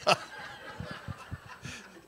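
A man chuckling quietly into a handheld microphone: soft, breathy bursts of stifled laughter a few tenths of a second apart.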